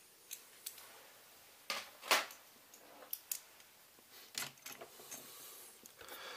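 Scattered light clicks and knocks of hard plastic parts being handled as the white plastic top cover of a Xiaomi robot vacuum is set down and moved around, with the loudest knock about two seconds in.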